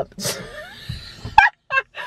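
A woman laughing hard: a breathy laugh, then a sudden loud, high burst about one and a half seconds in and two short bursts after it.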